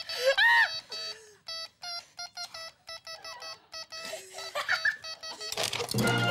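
Electronic buzzer of a wire-loop steady-hand game sounding in a rapid string of short, irregular beeps as the loop touches the wire. There is a laugh about half a second in.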